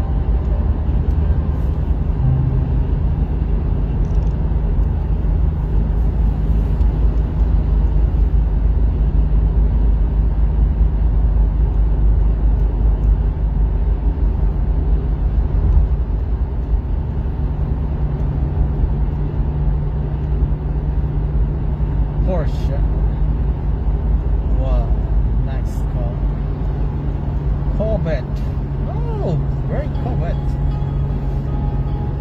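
Steady low rumble of road and engine noise inside a moving car's cabin, with a constant low hum. A few faint gliding voice-like sounds and clicks come in during the last third.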